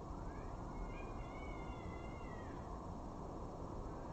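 An animal's drawn-out, high whining call that rises at the start, holds for about two seconds and falls away before the end, over a steady low background rumble.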